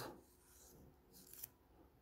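Faint scratching of a broad-nibbed calligraphy pen on paper: two short, soft scrapes, about half a second and a second and a quarter in.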